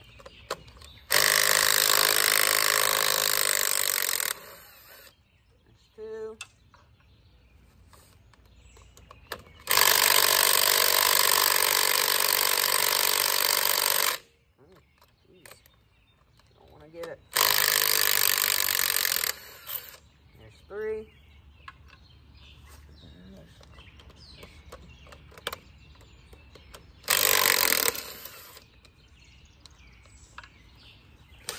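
Cordless impact driver hammering the governor mounting bolts off a Farmall A tractor engine, in four separate runs of one to four seconds with pauses between. The last short run near the end fails to break its bolt loose.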